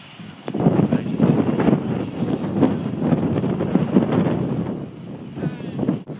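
Steam vent of Yellow Funnel Spring hissing and churning: a loud, rough rushing noise with no steady pitch, mixed with wind buffeting the microphone. It swells about half a second in and eases near the end.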